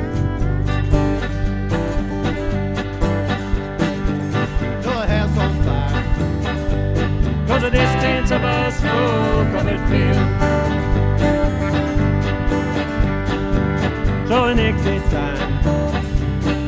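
Country-rock band playing an instrumental intro live: strummed acoustic guitar with electric guitars and bass, and a violin playing gliding melody lines over them.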